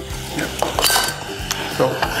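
Wooden spoon stirring sliced onions in a stainless steel saucepan, with a couple of sharp knocks and clinks against the pan about halfway through.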